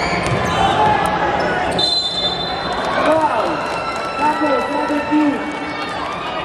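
A basketball being dribbled on a hardwood gym floor, repeated bounces under the shouting of players and spectators, with a brief high steady squeal about two seconds in.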